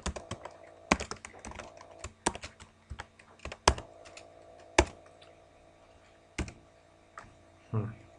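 Typing on a computer keyboard: quick runs of keystrokes for about the first five seconds, then a few single key presses, as code is typed into a Python shell.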